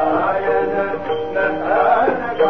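Music: a voice singing held, bending notes over instrumental accompaniment.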